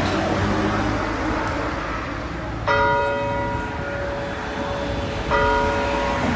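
Church bell rung by hand with a pull rope, striking twice about two and a half seconds apart, each stroke ringing on. A steady noisy background lies under it.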